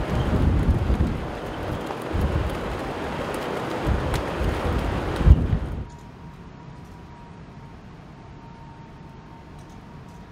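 Wind buffeting the microphone in loud, uneven gusts, until it cuts off suddenly a little before six seconds in. What remains is a quieter steady hum with a faint high tone.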